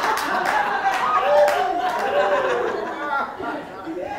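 Audience in a hall laughing and talking over one another, with a few scattered claps, dying down near the end.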